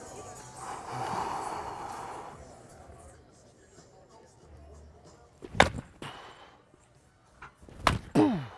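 Two sharp cracks of a wooden baseball bat hitting balls in batting practice, about two seconds apart, the second near the end. Before them, about a second in, comes a soft rushing noise.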